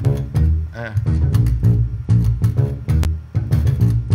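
Electric bass guitar playing a 1970s-style funk bass line: a rhythmic run of low plucked notes.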